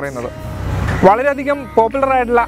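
A rush of noise that swells for under a second and stops abruptly, then a man's voice resumes.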